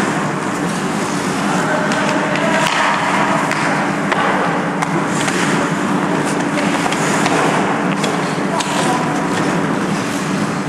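Ice hockey skate blades scraping and carving on rink ice, with scattered sharp clacks of sticks and puck, over a steady low hum.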